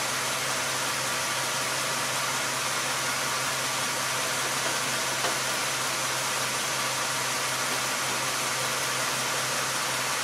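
Car engine idling steadily, heard as an even, unchanging noise with a constant low hum.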